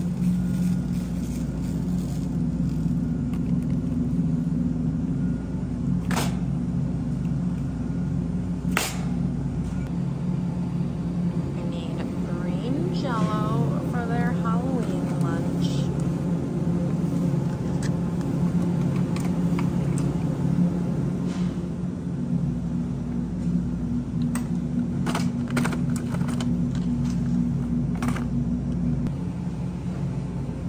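Supermarket aisle background: a steady low hum, with a few sharp knocks and, about halfway through, a few seconds of a distant voice.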